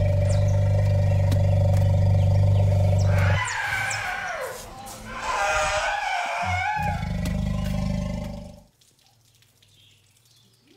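Asian elephants vocalizing: a long low call, then two higher, wavering calls, then another low call that cuts off suddenly about nine seconds in. The calls come from an intensely excited elephant meeting another, which the keepers read as joy, not aggression.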